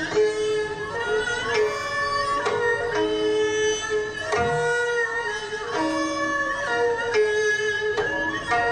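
Korean traditional jeongak ensemble playing a slow piece: a gayageum plucked under long held notes from bowed and bamboo wind instruments, with sharp accented strokes every second or so.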